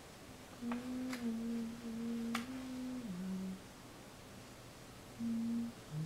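A person humming a slow tune in long, low held notes, stopping about halfway through and coming back with one short note near the end. Three light clicks sound over the first stretch of humming.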